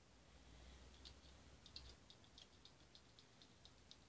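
Faint, quick run of small plastic clicks, about four to five a second, from an empty mini stapler being pressed over and over; with no staples loaded it only clicks.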